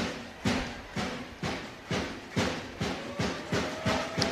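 Spectators in the stands beating out a steady rhythm, sharp beats about two a second, while a kicker lines up a conversion.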